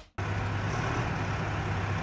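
Steady low hum of a running engine over an even background noise.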